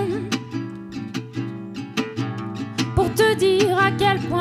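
Live acoustic band music: an acoustic guitar strummed in a steady rhythm over a double bass, in a short instrumental gap between sung lines. A woman's singing voice comes back in about three seconds in.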